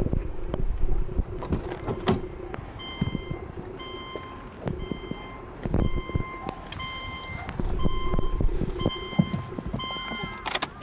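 Subaru Legacy dashboard warning chime beeping about once a second, the reminder that sounds with the driver's door open and the key in the ignition, starting about three seconds in. Knocks and rustling from the door and handling come before and between the beeps.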